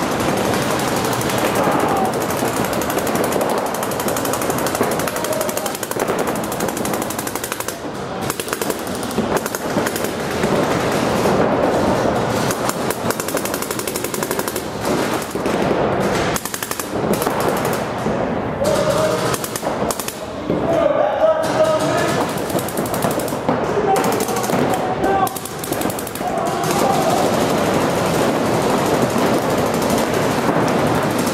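Paintball markers firing rapid, continuous strings of shots from several players inside an indoor field, with shouting between the volleys.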